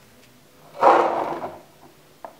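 Handling noise: one short scraping rub about a second in, fading within under a second, as the plastic cordless-phone handset is taken from its charging dock.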